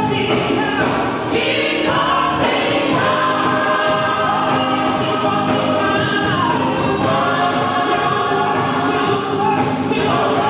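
A gospel praise team of several voices singing together into microphones over instrumental backing, with sustained, held notes.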